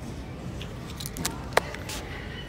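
Handling of clothes and a paper hang tag: a few light clicks and rustles, the sharpest about one and a half seconds in, over a steady low store hum.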